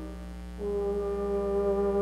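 Live concert band: a soft held chord, then about half a second in the brass come in with a louder sustained chord that holds steady.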